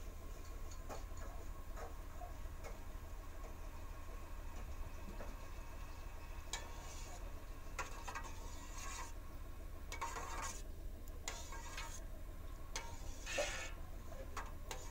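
Metal spoon stirring liquid in a stainless steel pot, with light clinks and a few short scrapes against the pot, over a steady low hum.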